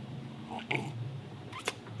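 A short slurping sip from a mug of hot tea over a steady low room hum, with one sharp click near the end.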